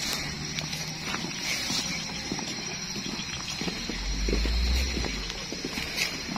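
Footsteps in rubber boots on a dirt path, an uneven run of soft steps, with a low rumble joining about four seconds in.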